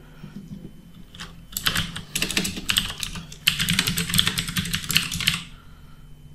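Typing on a computer keyboard: one key press about a second in, then a quick, steady run of keystrokes that stops shortly before the end.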